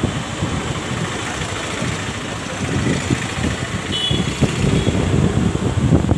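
An electric fan blowing close to the microphone: a steady rushing noise with an uneven low rumble of air buffeting the mic.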